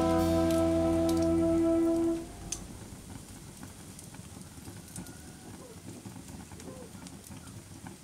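Music holding a chord ends about two seconds in. After it comes a faint ambience bed of a crackling wood fire: a soft hiss with scattered small pops.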